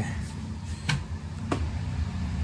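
Two short knocks, about half a second apart, as a can and other items are handled on a metal garage shelf, over a steady low hum.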